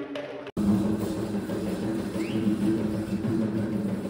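Background music cuts off abruptly about half a second in, giving way to the live sound of a street procession: a steady low drone over dense, busy noise.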